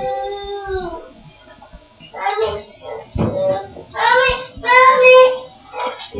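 A young child's voice in several short phrases, the first held and drawn out, the later ones quicker and broken into syllables.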